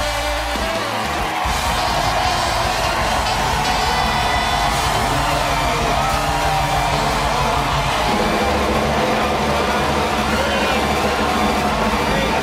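Band music playing the show's walk-on over a studio audience cheering, whooping and clapping in a standing ovation, steady throughout.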